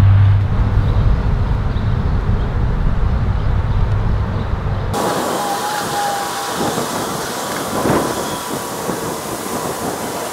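Outdoor background noise: a low rumble for the first half, cut off abruptly about five seconds in and replaced by a steady hiss with a faint held tone.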